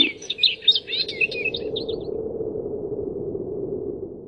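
Small birds chirping and twittering in a quick run of short calls that fades out about two seconds in, over a steady low drone.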